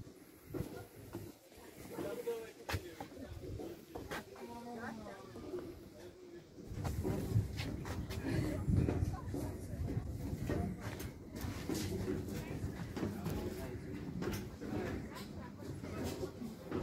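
Indistinct people talking, with scattered knocks and clicks; a low rumble sets in about halfway through.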